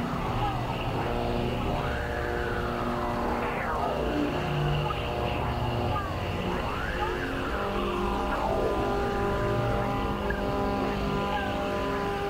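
Experimental synthesizer drone: several held tones layered at a steady level, with slow sweeps that rise and fall in pitch every few seconds.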